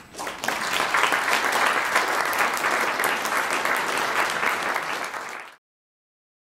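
Audience applauding, many hands clapping together; it swells within the first second and cuts off abruptly near the end.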